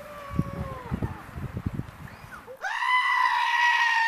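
Goat bleating, dubbed in as a comic sound effect: a fainter call with a sagging pitch, then about two-thirds of the way in a loud, long, steady cry that drops at the end.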